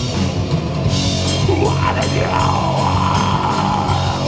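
Heavy metal band playing live: distorted electric guitars, bass and drum kit, loud and dense. A long, wavering high note comes in about a second and a half in and is held to the end.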